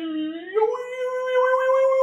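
A man's voice drawn out in one long wailing, howl-like note. It dips low at first, then rises about half a second in and holds steady.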